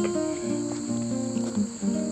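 A steady, high-pitched chorus of crickets with background acoustic guitar music playing held notes.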